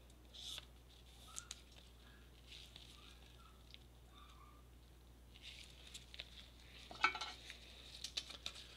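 Gloved hands handling a trading card and plastic card holders: faint scattered rustles and light plastic clicks, with a louder rustle and scrape about seven seconds in, over a steady low hum.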